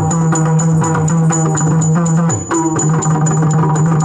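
Yakshagana dance accompaniment: rapid maddale and chende drumming, with pitch-bending drum tones, over a steady drone, and hand cymbals (tala) ringing on the beat. The playing dips briefly about halfway, then carries on.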